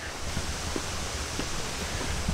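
Outdoor ambience: a steady hiss with a low rumble of wind on the microphone and a few faint ticks.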